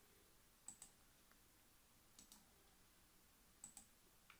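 Faint computer mouse clicks over near silence: three quick double clicks about a second and a half apart.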